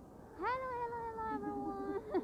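A woman's long drawn-out high vocal call starting about half a second in, jumping up in pitch and then sliding slowly down.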